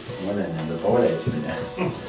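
Indistinct voices over background music with a steady beat.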